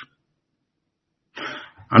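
Dead silence, then about a second and a half in a man briefly clears his throat.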